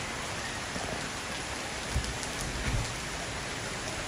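Heavy rain pouring onto a swimming pool's water and the brick paving around it, a steady even hiss, with a couple of low bumps about halfway through.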